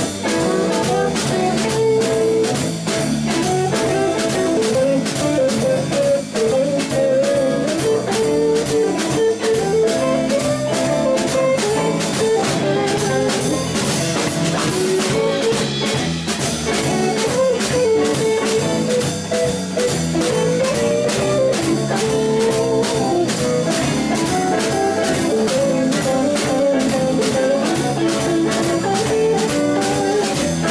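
Live band playing an instrumental passage: several electric guitars, one carrying a melody line, over a drum kit keeping a steady beat.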